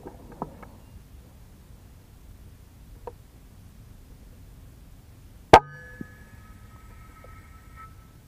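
A single shot from a .25-calibre FX Impact M3 PCP air rifle: one sharp crack about five and a half seconds in, followed half a second later by a fainter click, with a faint high ringing lingering for about two seconds after the shot.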